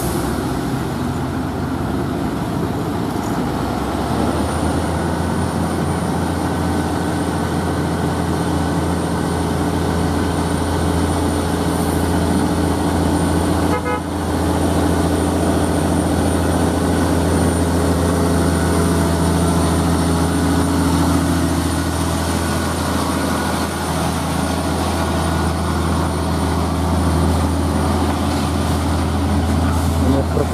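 FAW JH6 tractor unit's diesel engine labouring steadily at low speed, pulling a heavy load of steel up a climb, with a thin steady high whine joining in a few seconds in.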